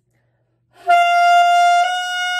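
Yamaha alto saxophone playing a loud held high note, D above the staff (the overtone that can be played with the G fingering), starting about a second in; it breaks briefly and resumes at the same pitch with a slightly changed tone.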